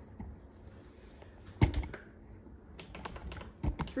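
Air fryer controls clicking a few times as the cooking temperature of 360 degrees and the six-minute time are set: a sharp click about one and a half seconds in, then more around three seconds and near the end.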